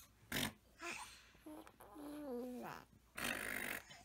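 A young baby vocalizing: short cooing sounds that glide and step down in pitch in the middle, set between two breathy, noisy bursts, one near the start and one near the end.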